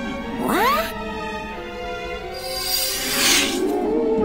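Cartoon background music, with a short rising squeal about half a second in, then a rising whoosh sound effect that swells and peaks about three seconds in as the ghost cutout lights up in a magic flash.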